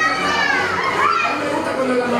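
Children playing and calling out, their high voices rising and falling, with talk mixed in.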